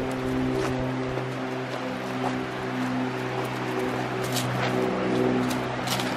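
Background music: a held low note under soft sustained notes that change every second or so.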